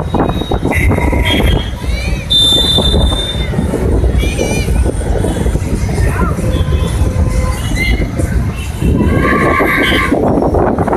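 Wind rumbling on the microphone over the noise of an outdoor crowd, with voices and a few short high-pitched wavering tones.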